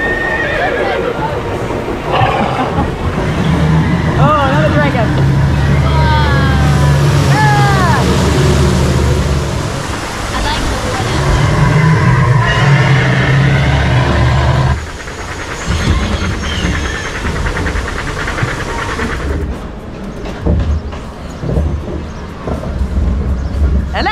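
Ride sound effects: horse-like whinnies, the pitch wavering then falling, over a steady low drone that cuts off about two-thirds of the way through.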